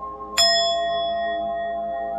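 A metal singing bowl struck once about half a second in, ringing on with a low tone and several higher overtones that fade slowly, the highest dying first.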